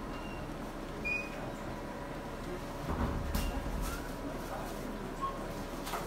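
Operating-room equipment background: a steady hum with faint held tones, a couple of short high electronic beeps and a few light clicks, with a brief low rumble about three seconds in.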